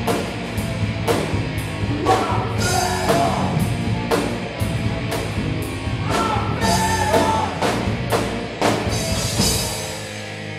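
A live metal punk band of electric guitar, electric bass and drum kit playing loud and fast, with regular drum and cymbal hits and vocals over the top. The drumming stops right at the end, leaving a chord ringing.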